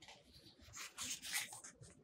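A page of a picture book being turned by hand: a few faint, short paper rustles in the middle.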